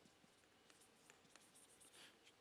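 Faint scratching and tapping of chalk writing on a chalkboard, a run of short strokes.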